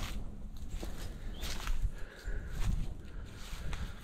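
Footsteps on dry leaf litter and twigs, with irregular crackles and snaps as the walker moves along.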